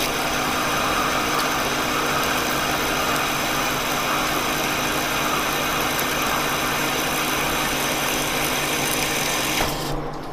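Monarch engine lathe turning a chrome-plated steel roller, the tool cutting under coolant: a steady hiss over the machine's running hum. The hiss cuts off abruptly just before the end, leaving the lathe running.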